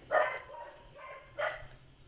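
A dog barking twice, faintly, about a second and a half apart.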